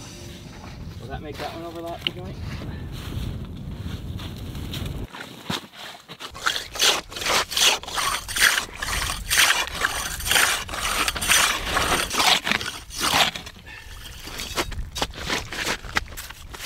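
Hand ice saw cutting through lake ice: rasping back-and-forth strokes, about two a second, that start about six seconds in and stop shortly before the end.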